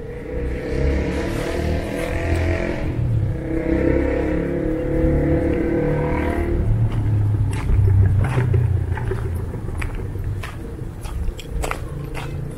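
A motor vehicle's engine running nearby, swelling and fading over the first few seconds, followed by a low rumble and then a few sharp clicks near the end.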